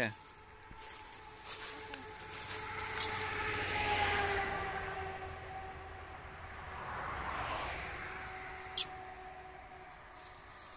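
A distant engine drone: a steady two-pitched hum that sinks slowly in pitch and swells twice, about four seconds in and again near seven seconds. A single short, sharp chirp comes near the end.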